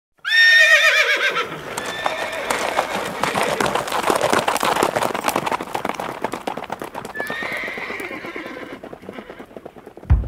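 A horse whinnies loudly at the start, then a rush of galloping hoofbeats follows, with another brief whinny about seven seconds in, fading away near the end.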